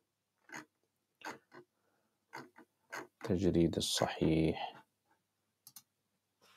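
Scattered single clicks of a computer being worked, about six spread through the first half and two quick ones near the end. A short stretch of a man's low, muttered voice comes between them, a little past halfway.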